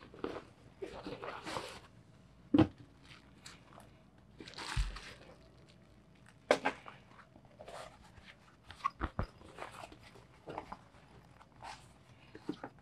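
Fabric tote bag and a plastic bag of coins rustling as they are handled, with several sharp knocks and a dull thump as a banknote bundle and a coin bag are set down on a wooden table. The coins clink in their plastic bag.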